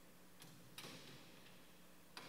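Faint clicks from the tabernacle being handled: a light click, then half a second later a louder metallic click with a short ring.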